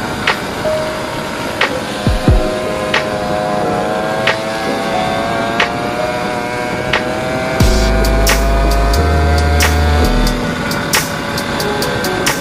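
Background music with a sparse beat, one hit about every second and a third, over a held tone that rises slowly. Heavy bass and quicker drum hits come in a little past halfway.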